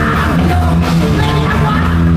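A rock band playing live on electric guitars and drums, heard from within the audience.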